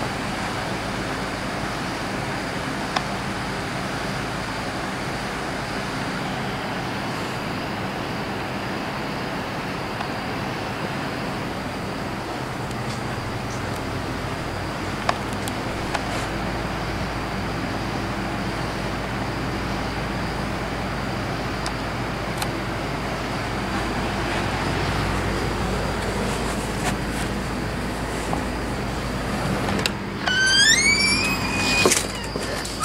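Lasko box fan running in a window: a steady rush of air over a low motor hum, with a thin steady high note above it and a few faint clicks.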